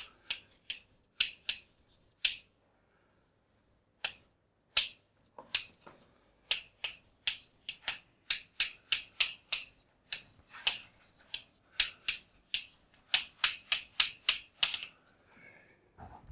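Chalk writing on a blackboard: a series of sharp, irregular taps and short scratches, a few a second, with a pause of about two seconds near the start.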